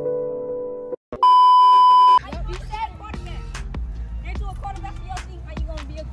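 Soft piano background music stops about a second in. A loud, steady, high-pitched beep sound effect follows for about a second. Then live outdoor sound cuts in, with children's voices and wind rumbling on the microphone.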